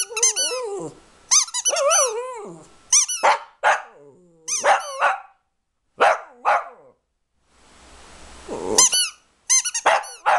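A small long-haired dog howls along with its head raised, in a wavering call over the first couple of seconds. Short yips and barks follow. Runs of rapid high squeaks come at the start and again near the end.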